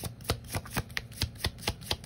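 A deck of oracle cards being shuffled by hand: a quick, even run of card slaps, about four to five a second.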